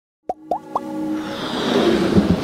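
Intro sound design: three quick rising pops about a quarter second apart, then a swelling electronic music build-up that grows steadily louder.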